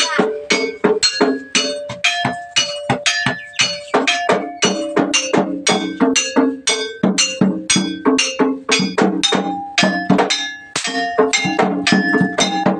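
Jaranan music for a kuda kepang dance: gamelan-style struck metal gong-chime tones and drum strokes in a fast, steady rhythm of about four strikes a second.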